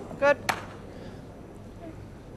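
A single sharp click of lawn bowls knocking together about half a second in, over a low, steady hall background.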